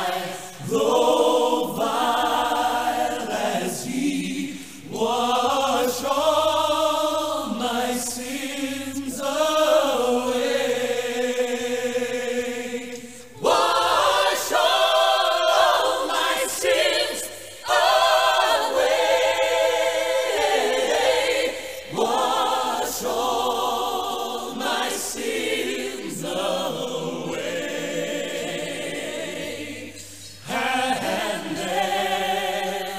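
A choir singing in long, held phrases with slight vibrato and short breaks between them, with little bass or accompaniment under the voices.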